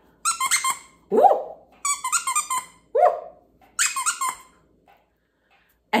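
Squeaker inside a plush candy corn dog toy squeezed several times in a row, giving short high squeaks.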